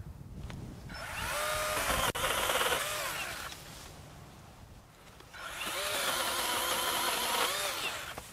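SKIL 40-volt brushless cordless pole saw running in two bursts of about two and a half seconds each, its electric motor whining up to speed and winding down again each time. The chain cuts small overhead limbs very easily.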